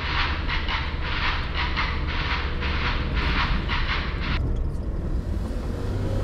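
Car driving along a road, a steady low rumble of engine and tyres heard from inside the cabin. Over it, for the first four and a half seconds, a loud high buzz pulsing a few times a second, which then stops abruptly.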